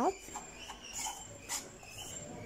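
Metal spoon stirring semolina into melted butter in a metal frying pan: a few soft, irregular scraping strokes.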